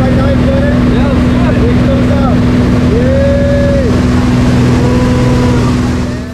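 Steady drone of a single-engine propeller plane heard from inside the cabin, under loud wind rush, with voices calling out over it, one held for about a second midway.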